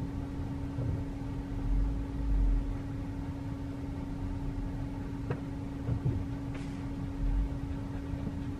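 Steady low hum inside a Tesla Model 3 cabin as the car creeps forward at well under one mile an hour, with faint low rumbles and a few light ticks.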